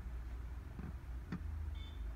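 A steady low background rumble, with one sharp click a little past halfway and a short high beep near the end.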